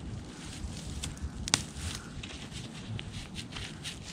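Gloved hands digging and rummaging through loose soil and dry sweet potato vines, with scattered small crackles and one sharper click about a second and a half in.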